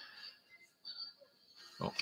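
Mostly quiet room tone with a faint steady high tone, and faint brief handling sounds about a second in as fly-tying materials are picked up.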